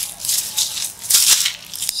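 Footsteps crunching through dry fallen leaves, a crisp rustle about twice a second.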